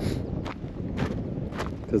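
Footsteps on a loose gravel path, four steps at an even walking pace, over a low rumble of wind buffeting the microphone.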